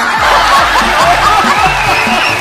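An audience laughing and chuckling at a joke, many voices at once, over background music.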